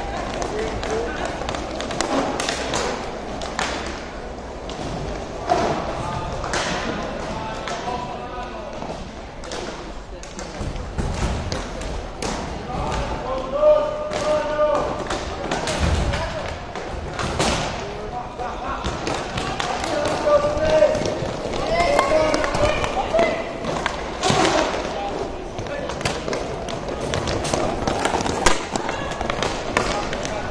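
Inline hockey game: voices shouting across the rink, mixed with repeated sharp clacks of sticks and puck and occasional thuds.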